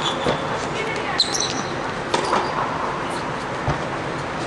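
Tennis rally on an indoor hard court: sharp racket strikes and ball bounces about a second apart, with short high squeaks of shoes on the court surface.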